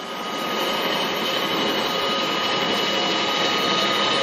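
Engine lathe running: a steady whirring hiss with a faint high whine, which swells over about the first second as it comes up to speed and then holds steady.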